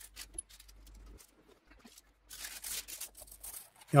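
Baking paper crinkling and rustling as it is handled with silicone gloves on a sandwich press, with scattered small clicks and crackles and a louder rustle about two and a half seconds in.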